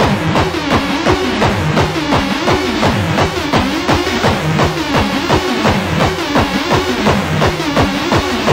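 Hardcore gabber techno: a distorted, pitch-falling kick drum pounds at about three beats a second under a wobbling, bending synth line.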